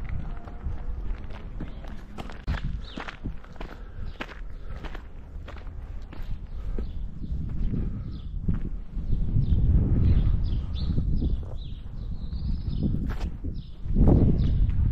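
Footsteps of a person walking, a steady run of short steps over a low rumble on the microphone that grows louder about nine seconds in.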